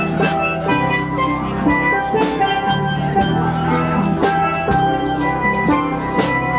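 Steel band playing: several steel pans strike quick melodic and chordal notes over a drum kit keeping a steady beat and an electric bass line.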